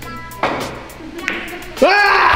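A pool cue strikes the cue ball with a sharp knock about half a second in as background music cuts off, followed by a fainter click of balls meeting; near the end a voice exclaims loudly.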